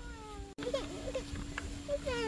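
A young child's high, drawn-out whining vocal sounds that waver in pitch, cut by a brief dropout about half a second in, over a steady low hum.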